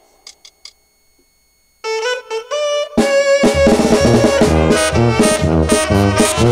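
A Mexican brass band (banda) starts a song live. A few quick taps come first, then about two seconds in a single horn plays a short stepped lead-in phrase. About a second later the full band comes in, with a repeating tuba bass line under trumpets, trombones and drums.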